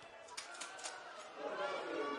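Faint shouts of footballers calling to each other on the pitch, heard through the stadium's near-empty acoustics, with a few short clicks about half a second in.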